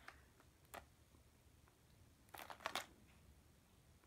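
Near silence with faint handling noise from a fishing lure's plastic package being turned over in the hands: a light click about a second in and a short run of clicks and rustle about halfway through.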